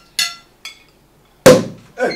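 Light glassy clinks, then a sparkling-wine bottle's cork popping loudly about one and a half seconds in.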